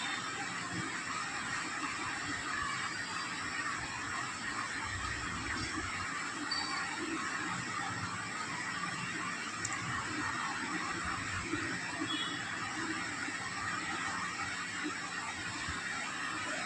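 Steady background hiss, even throughout, with no distinct clicks or tones.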